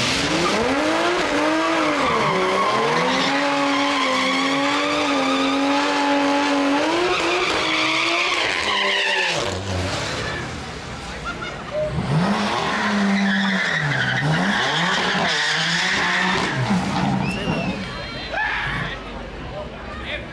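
Drag-strip burnout: a Toyota A90 Supra's engine revs up and is held at a steady high pitch for several seconds while its rear tyres spin and squeal, then drops away about nine seconds in. A second engine then revs up and down in wavering bursts for several seconds.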